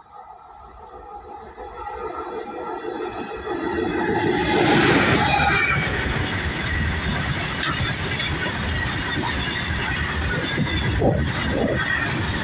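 Indian Railways WAG-7 electric freight locomotive approaching with a steady hum of several tones that grows louder and passes close about four to five seconds in. A long rake of open freight wagons then rolls past at speed with a continuous rumble and rattle of wheels on rail.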